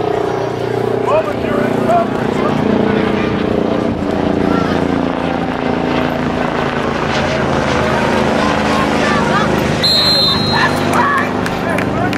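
Scattered voices calling out on a football sideline during a play, over a steady low engine drone. A referee's whistle blows briefly near the end as the play ends.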